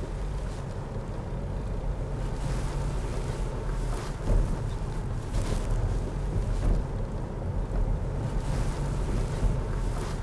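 Steady low rumble of road and engine noise inside a moving car, with a brief thump about four seconds in.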